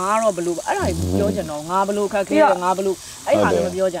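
People talking in Burmese, with a faint steady hiss underneath.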